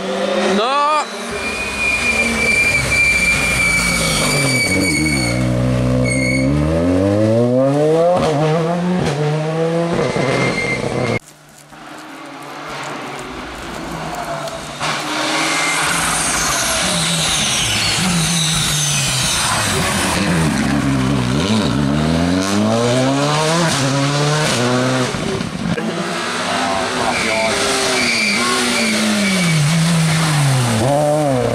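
Rally cars at speed on a wet tarmac special stage, engines revving hard, their pitch repeatedly climbing and dropping through gear changes and lifts as each car approaches and passes close by. The sound cuts out abruptly near the middle and then resumes with another car.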